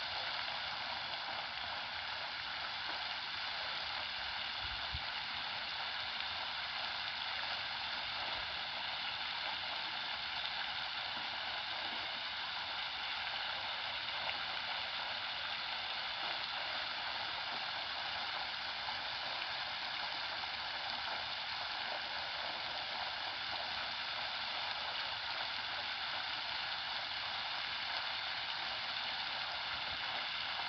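Floating fountain's water jets spraying up and splashing back onto the pond surface: a steady hiss of falling water.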